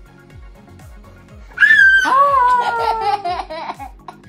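A toddler's loud, high-pitched squeal sliding downward about a second and a half in, breaking into a run of short bursts of laughter, over background music with a steady beat.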